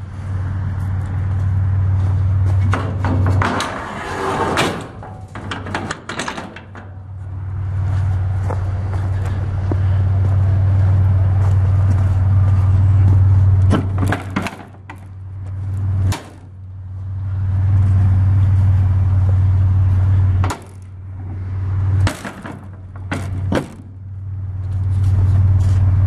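Metal clicks, clanks and rattles of an aluminium livestock trailer's rear door and its rod latch being worked by hand. They come in a few clusters over a steady low hum that drops out briefly several times.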